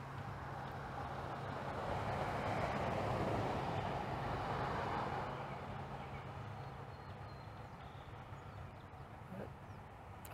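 A vehicle passing by: a rush of road noise that swells over the first few seconds and fades away, over a steady low hum.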